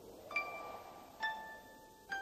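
Two chime-like struck notes, each ringing and slowly fading, the second lower and about a second after the first: the first notes of the song's instrumental intro.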